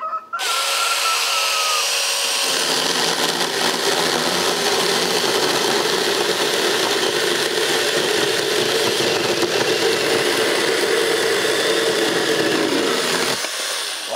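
Saker 20-volt mini cordless electric chainsaw starting up and cutting through a log of African sumac, a very hard wood. The motor's whine drops in pitch over the first two seconds as the chain bites in. It then runs steadily under heavy load, struggling, for about eleven seconds before it stops just before the end.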